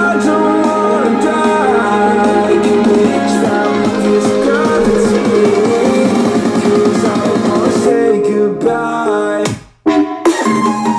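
Rock music with guitar and singing, played loud at maximum volume from a Jabra Speak 710 wireless speakerphone. It breaks off briefly near the end, and a different track starts right at the end.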